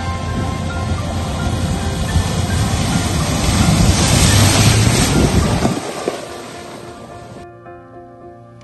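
Water spraying as a Jeep Wrangler drives through a shallow creek crossing: a rushing splash that builds to its loudest about four to five seconds in and dies away near six seconds. Background music plays underneath throughout.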